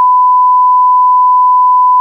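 Fire dispatch radio alert tone: one loud, steady beep on a single pitch, held for about three seconds. It is the attention tone the dispatcher sends before broadcasting that the fire is under control.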